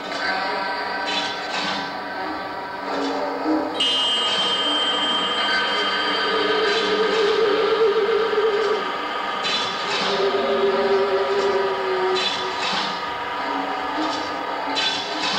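Live band music carried by sustained keyboard or synthesizer chords, with a high held tone coming in about four seconds in and scattered sharp percussion hits.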